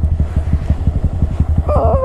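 Honda Grom's 125 cc single-cylinder engine running at low revs with an even, rapid pulse while the bike is slowed to a stop on snow.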